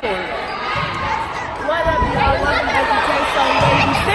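Crowd chatter from spectators in a school gymnasium, many voices overlapping, with a couple of dull thuds about two seconds in and near the end.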